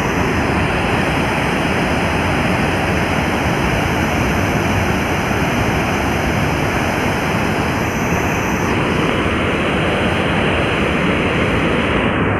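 Floodwater pouring through a dam's open spillway gates and churning into the river below: a steady, loud rush of water.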